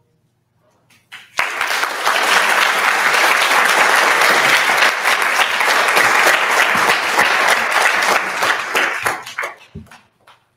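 Audience applauding. It starts suddenly about a second in, after a brief silence, and dies away near the end.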